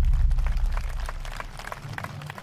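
Deep bass boom of an animated logo sting dying away: a low rumble that fades steadily over the two seconds.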